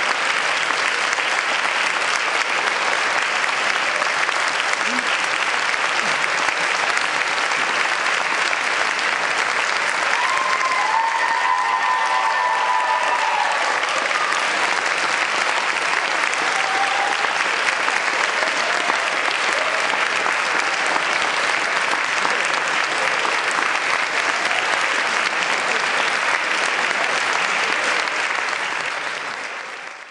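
Audience applauding steadily, with a brief shout or whoop rising above the clapping about ten seconds in; the applause fades out near the end.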